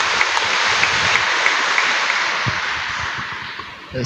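Audience applauding, steady at first and dying away near the end.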